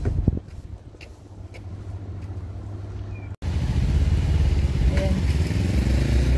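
Road traffic: a motor vehicle's engine rumbling as it passes on the street. The sound drops out for an instant a little past halfway and comes back louder.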